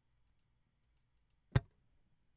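A single short, sharp click about one and a half seconds in, after a few faint ticks.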